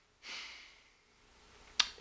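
A man's soft breathy exhale, a brief sigh, about a quarter second in. Near the end comes a single short, sharp click, just before he speaks.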